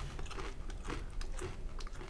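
Stylus nib scratching and tapping lightly on a graphics tablet's surface while writing: a faint, irregular run of small scratches.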